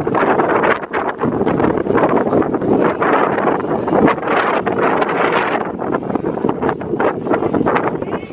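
Wind buffeting the microphone, a loud gusting noise that rises and falls, with scattered short clicks and knocks through it.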